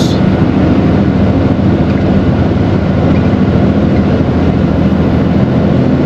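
Steady drone of a Mercedes-Benz Atego bitruck's diesel engine with tyre and road noise, heard from inside the cab while cruising along a highway.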